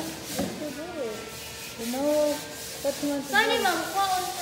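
Cloth wiping a glass window pane: rubbing with a few squeaks that bend up and down in pitch, the longest near the end.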